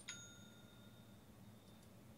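A faint bell-like ding, a single stroke with a few clear pitches, rings out right at the start and dies away over about a second, just after a mouse click. Faint mouse clicks follow near the end, over low room hum.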